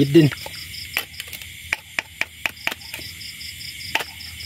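Crickets chirping in a steady, rapid pulsed trill, with a run of sharp clicks and snaps close by in the first three seconds as a set hook line is handled among grass stalks.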